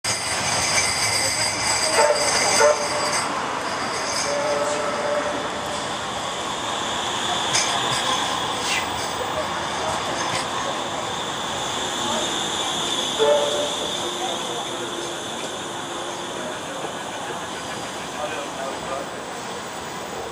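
Manchester Metrolink Bombardier M5000 trams running past close by on street track, a coupled pair rolling slowly alongside. A steady rumble with high-pitched whining tones over it.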